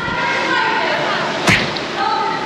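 Video-edit transition whoosh that ends in a single sharp whip-like crack about one and a half seconds in, over a steady high whine.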